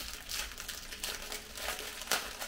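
Clear plastic packaging crinkled and scrunched in the hands: a dense, continuous run of crackles.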